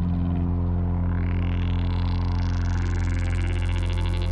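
Electronic background music: a sustained low synth drone with a rising sweep building over a few seconds, the fuller rhythmic texture returning near the end.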